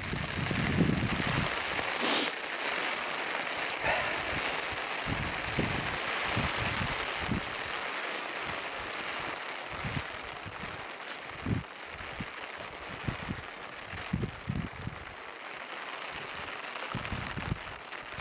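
Steady hiss of falling rain, with irregular low thumps of footsteps wading through tall wet meadow grass.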